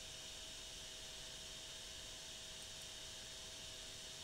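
Faint steady hiss from the recording's background noise, with a thin, constant electrical hum running under it.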